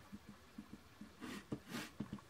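Clear acrylic stamp block tapped repeatedly onto a Crumb Cake ink pad to ink a sentiment stamp: a run of soft, dull taps, then a sharp click and a couple of brief rustling swishes in the second half.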